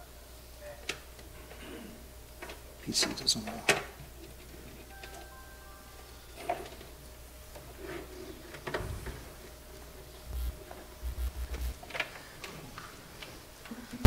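Quiet lecture-hall room tone with a low steady hum and scattered clicks and knocks, a few louder ones about three seconds in.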